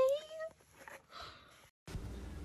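A kitten meowing: one high, drawn-out cry that rises slightly in pitch and stops about half a second in. Faint small rustles follow, and near the end a steady low background hum starts.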